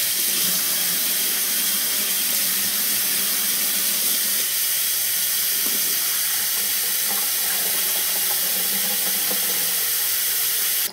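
Kitchen faucet running steadily, its stream pouring into and over a glass wine bottle held under it and splashing into the sink.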